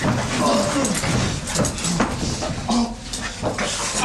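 A man whimpering and groaning in pain in short, broken cries, over a noisy, dense background.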